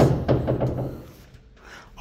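Wardrobe door being pulled open: a sharp knock right at the start, then the sound fades to quiet room tone in the second half.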